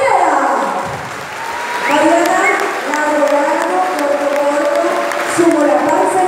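A woman singing into a microphone over a PA system in a large gym hall. Her voice slides down in pitch in the first second, then holds long notes. Audience applause runs underneath.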